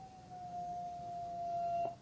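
A single wolf howling: one long note that dips slightly at the start, then holds steady and cuts off near the end.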